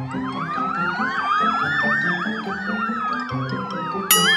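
Cartoon sound effect: a siren-like electronic warble wobbling up and down about three times a second, over a long tone that slowly rises and then falls, with low musical notes underneath. It starts suddenly after a moment of silence.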